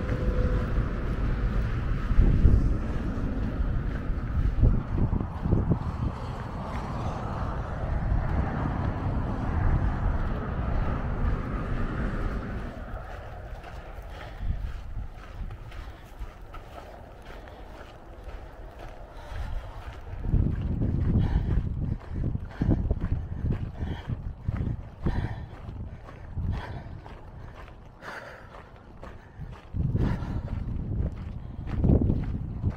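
Wind buffeting the microphone in a loud low rumble, strongest through the first twelve seconds and again from about twenty seconds in. Footsteps sound in between and under it.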